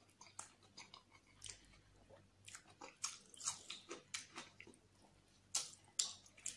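Close-miked chewing of a mouthful of spiced rice and chicken: soft, irregular mouth clicks, with a louder one near the end.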